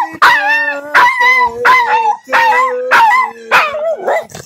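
Boston terrier howling in a run of about six short, wavering yowls, one roughly every half-second.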